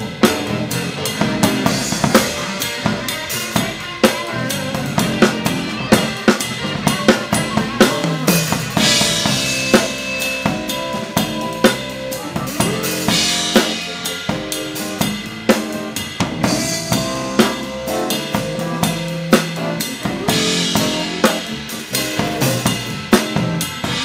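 Acoustic drum kit played with sticks in a busy groove: fast snare and bass drum strokes with Zildjian K cymbals, and crashing cymbal washes about 9, 13 and 21 seconds in. Held pitched notes from other instruments sound underneath the drums.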